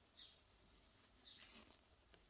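Near silence, with two faint soft rubs from a sponge-tipped applicator dabbing metallic nail powder onto cured resin in a silicone mould: one just after the start, the other about a second and a half in.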